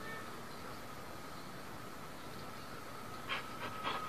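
An animal breathing in three or four quick, sharp puffs near the end, over a steady hiss and a faint, steady high-pitched whine.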